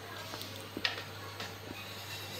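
A young parrot biting and chewing a chilli pepper with its beak: a few small crisp clicks and crunches, the loudest a little under a second in.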